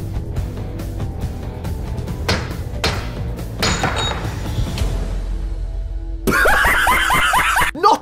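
Music with a steady low beat under a few sharp impacts of a steel blade struck against a wooden pole, with a brief high metallic ring; the blade breaks on the strike. A man's voice comes in near the end.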